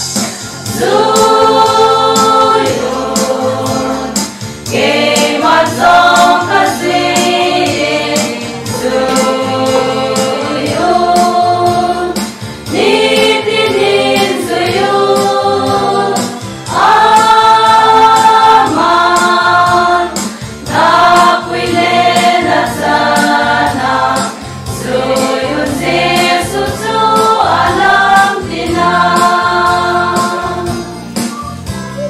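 Women's choir singing a gospel hymn together in sustained phrases of a few seconds each, over electronic keyboard accompaniment with a steady beat.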